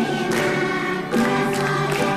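A children's choir singing a song in unison, with instrumental accompaniment, each phrase starting on a sharp accent.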